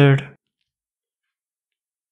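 The end of a man's spoken 'over-under', then dead silence, with the audio muted between phrases.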